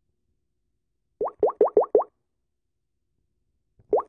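A quick run of five short, rising 'bloop' plops, evenly spaced, then a single one near the end.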